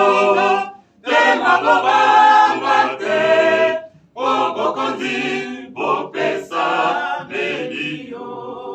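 A small group of voices singing together unaccompanied, in phrases broken by two brief pauses about one second and four seconds in.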